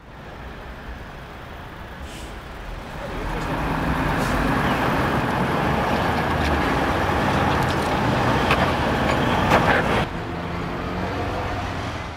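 Toyota LandCruiser 200 Series V8 engine working hard up a rock climb in low range with traction control off, with a few sharp knocks. It builds over the first few seconds, stays loud for about six seconds, then drops off about ten seconds in as the truck breaks traction and stalls on the climb without lockers.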